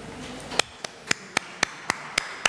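Hand clapping in a steady, even rhythm, about four sharp claps a second, starting about half a second in.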